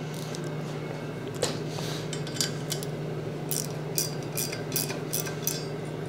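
Light metallic clicks and clinks of steel parts being handled and a bolt on the belt grinder's steel plate being tightened with a wrench, the clicks coming more often in the second half. A steady low hum runs underneath.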